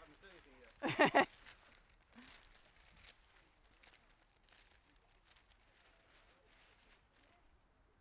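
A short laugh about a second in, then faint rustling and crinkling of a large sheet of newspaper being handled and folded.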